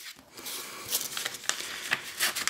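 Scissors cutting through sheets of printed paper: a series of short, crisp snips with paper rustling, mostly from about a second in.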